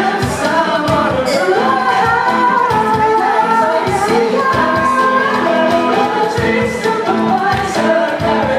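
A vocal group singing live together in harmony over band accompaniment with a steady beat, in a medley of 90s pop songs.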